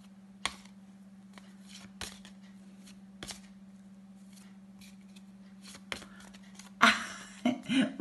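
Paper flashcards flipped by hand, giving a few sharp, separate clicks as one card is pulled from the pack and slapped on top of another, over a steady low hum. Near the end comes a louder breathy burst.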